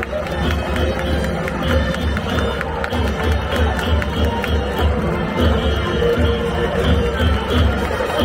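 Baseball stadium crowd with rhythmic cheering music: steady drum beats and regular clapping, with held melody notes over them.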